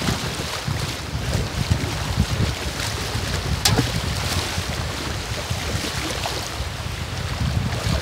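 Wind buffeting the phone's microphone over the wash and lapping of shallow sea water, with one sharp click a little after three and a half seconds in.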